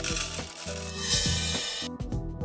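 Sound effect of a shower of coins jingling and clinking. It grows denser about a second in and cuts off abruptly just before the end, over background music.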